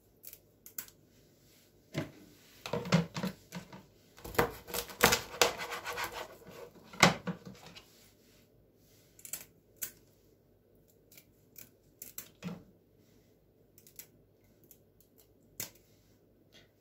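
Kitchen scissors snipping off the fins, tails and heads of small roach (river fish): a busy run of snips through the first half, then occasional single snips.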